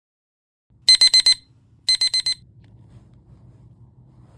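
Digital alarm clock sounding its wake-up alarm: two quick runs of four sharp, high-pitched beeps about a second apart, after which it stops.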